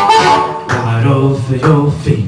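Amplified blues harmonica played cupped against a handheld microphone, a short boogie fill of held and bending notes between sung lines, over a guitar and bass accompaniment.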